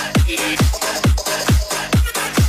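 Filipino 'battle remix' disco dance music with a heavy, booming kick drum that drops in pitch on every beat, a little over two beats a second, under synth and hi-hat layers.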